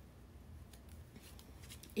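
Faint, crisp rustles and light clicks of tarot cards being handled, a few short strokes mostly in the second half.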